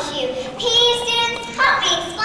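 A child's high voice with long, drawn-out syllables, between singing and exaggerated speech, carried over a sound system in a large room.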